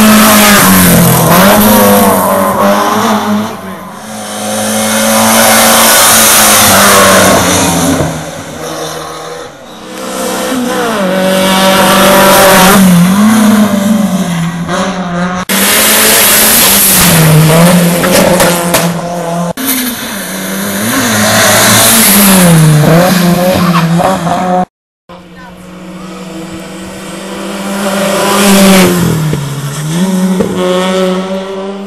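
Hillclimb race cars driven flat out one after another, their engines revving hard and dropping in pitch at each gear change or lift for a bend. The sound swells loud as each car passes and fades as it climbs away, with a short break near the end.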